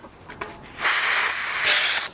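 A steady hiss of air at a bicycle tyre valve where a hand pump is attached, starting just under a second in and lasting about a second.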